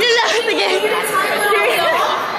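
Several people chattering and talking over one another in a large, echoing indoor space.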